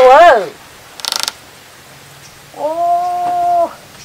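A woman's voice calling out without clear words: a short call that rises and falls, then a long call held on one steady pitch for about a second. A brief hiss comes between the two calls.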